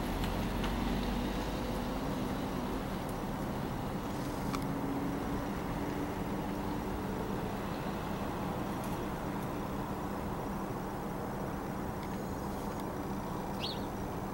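Steady low mechanical hum with a few faint clicks.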